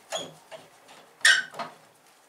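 Wooden marking gauge with a brass locking screw being handled and loosened on a workbench: a few light clicks and knocks, the sharpest a little over a second in.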